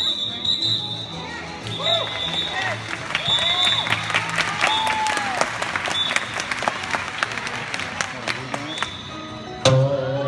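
Circus-show music with an audience clapping and calling out, over a run of short, high, steady whistle-like tones. A sharp loud hit comes near the end.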